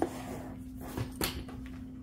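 A few light clicks and knocks from handling an inflatable boat's transom wheel and its pin bracket, the loudest about a second and a quarter in, over a steady low hum.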